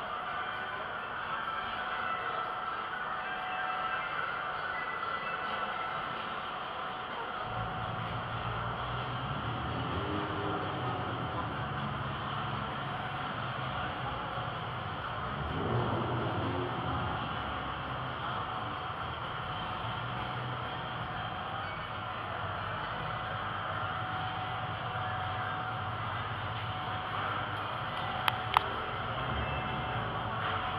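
Large exhibition-hall ambience: a steady hubbub of a big indoor room, joined about a quarter of the way in by a low steady hum, with a brief swell about halfway and two sharp clicks near the end.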